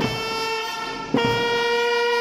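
Children's brass band of trumpets and a euphonium, with bass and snare drums, sounding two long held notes, the second starting on a drum stroke a little over a second in: minims of two beats each.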